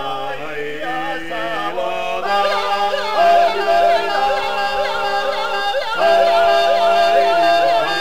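Gurian folk polyphony from a male choir: several voices hold long chord notes while a yodelling top voice (krimanchuli) flicks rapidly up and down above them. More voices join about two seconds in and the singing grows louder.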